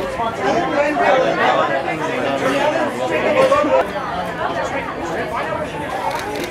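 Overlapping chatter of many voices talking at once, with no single voice standing out.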